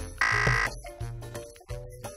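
Background music with a steady bass beat, and about a quarter second in, a loud half-second buzzer sound effect of the 'wrong answer' kind.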